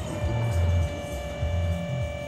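Battery-driven electric hydraulic pump whining steadily as the control valve lever is worked on a hydraulic screw-flight forming machine, with a low throb that swells and fades about once a second underneath.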